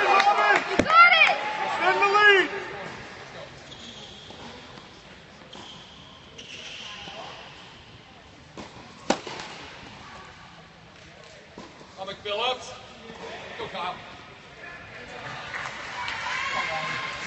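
Spectators' voices calling out for the first two seconds or so, then a quiet indoor tennis hall with one sharp smack of a tennis ball about nine seconds in, a fainter tap just before it, and another brief shout around twelve seconds.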